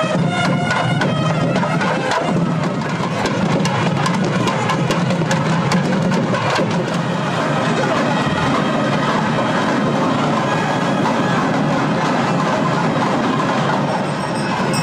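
Nadaswaram and thavil playing South Indian temple music: a loud, sustained reed melody over a rapid run of drum strokes.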